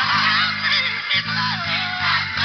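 Electric bass playing held low notes along with recorded gospel music, the bass note changing about a second in. Above it, a melodic line slides and bends in pitch.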